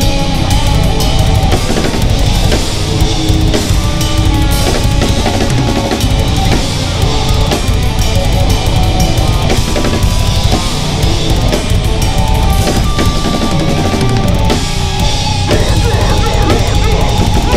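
Deathcore band playing live, the drum kit loud with fast, dense kick drum and cymbal work over distorted guitars and bass.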